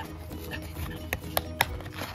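A small cardboard blind box being handled and its top flap pried open, with three sharp clicks a little after a second in, over soft background music.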